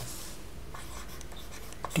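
Stylus scratching across a tablet screen in a few short handwriting strokes, over a faint steady low hum.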